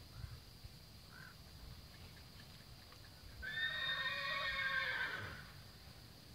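A horse whinnies once, a long call of about two seconds starting a little past the middle, its pitch holding level and trailing off at the end. Faint hoofbeats on arena dirt sound before it.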